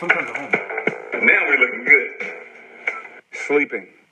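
A person's voice in short bursts of speech or vocal sounds, breaking off briefly a little after three seconds in.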